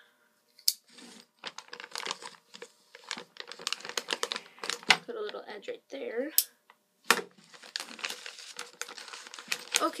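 Clear plastic bag crinkling as it is slit and torn open with a knife, with irregular rustles and sharp clicks.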